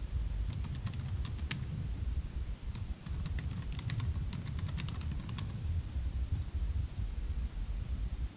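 Typing on a computer keyboard: a run of quick keystrokes for the first five seconds or so, then only a few scattered clicks, over a low steady rumble.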